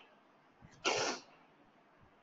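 A single short, breathy burst from a person about a second in, sudden at the start and fading over less than half a second, with no voiced pitch.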